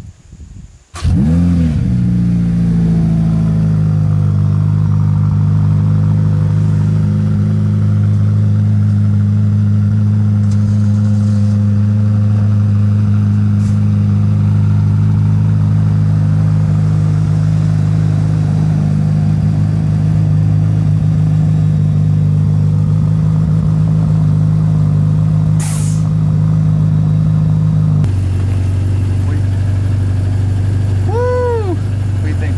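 Ferrari F8 Tributo's twin-turbo V8 starting about a second in with a quick flare of revs, then running at a loud, steady fast idle. About two seconds before the end the idle drops to a lower pitch.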